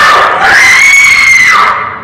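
A loud, shrill human scream: one long high cry that rises, holds for about a second and falls away near the end.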